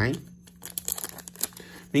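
Foil wrapper of a Pokémon TCG booster pack crinkling and tearing in the hands as it is pulled open, a scatter of small irregular crackles.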